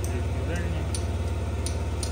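Yamaha Gear scooter's four-stroke, fuel-injected, liquid-cooled single-cylinder engine idling steadily. A turn-signal flasher clicks about every 0.7 seconds.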